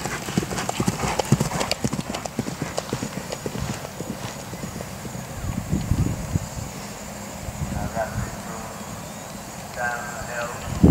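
Hoofbeats of a cantering horse on grass turf: a quick, rhythmic run of thuds, dense for the first few seconds and then thinning and fading as the horse moves away. Faint voices are heard near the end.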